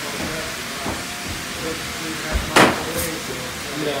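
Spray adhesive hissing steadily, with a short loud burst of spray about two and a half seconds in and a briefer one half a second later; faint voices behind it.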